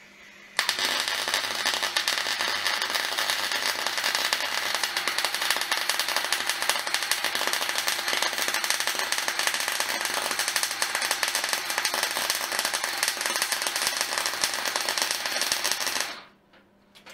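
Electric arc welding on a steel box-section frame: one continuous crackling arc that strikes about half a second in and is held for some fifteen seconds before it stops.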